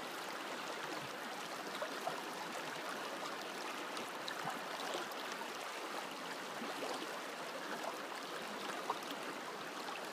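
Shallow river running steadily over a stony bed: an even rush of flowing water.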